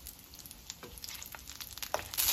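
Mutton kababs shallow-frying in oil in a pan over low heat: a faint sizzle with scattered sharp crackles of spitting oil.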